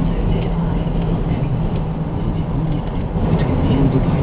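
Steady road and engine noise heard inside a car cabin while driving at highway speed, with a low, even hum underneath.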